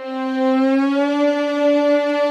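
A single sustained note from a sampled virtual instrument, played back with a pitch-bend ramp: it glides slightly up in pitch as it starts, then holds steady.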